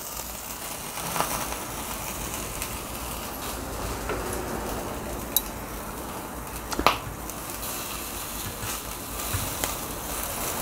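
Skewered pork sizzling on the wire mesh of a small charcoal grill, a steady hiss with scattered crackles as oil and fat drip onto the hot coals. A few sharp pops or clicks stand out, the loudest about seven seconds in.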